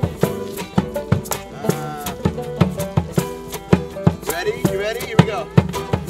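Acoustic folk band playing: acoustic guitars strummed over a djembe's steady beat, with banjo and fiddle in the group. A voice comes in over the music near the end.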